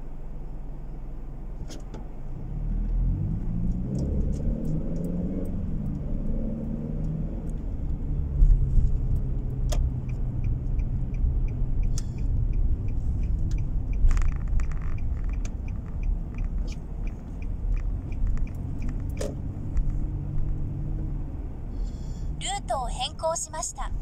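Car engine and road noise inside the cabin. The engine picks up as the car pulls away from a standstill about three seconds in, then settles to a steady low rumble. From about twelve to nineteen seconds a turn-signal relay ticks quickly and evenly.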